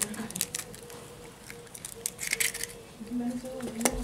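An eggshell being cracked and pulled apart by hand and emptied into a puffed corn tortilla. A few small clicks and a short crackle, with a sharp click near the end.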